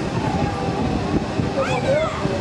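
Wind rushing over the microphone as the car of a spinning rocket-ship ride moves through the air, a steady low rumble throughout. A short voice is heard near the end.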